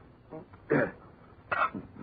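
A man clearing his throat twice, in two short rough bursts.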